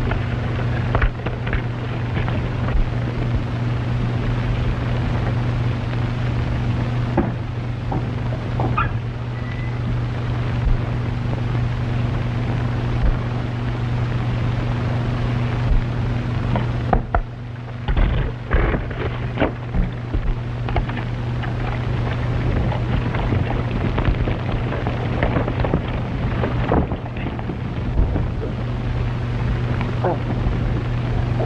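Steady hum and hiss of an old optical film soundtrack, with scattered crackle and a cluster of sharper knocks a little past halfway.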